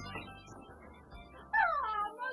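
Music fading down, then about one and a half seconds in a woman's loud, high cry that falls in pitch, an excited greeting at the door.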